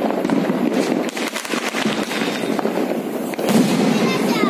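Diwali fireworks crackling: a dense, continuous run of small pops and cracks, swelling louder about three and a half seconds in.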